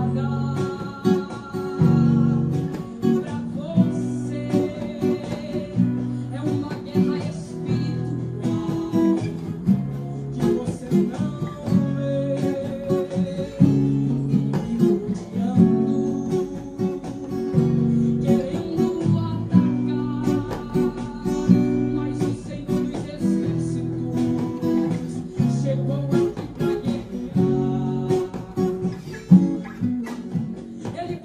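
Takamine acoustic guitar strummed up and down through a simplified chord progression in F-sharp minor (F♯m, Bm, F♯7, C♯7), the chords changing about every one to two seconds.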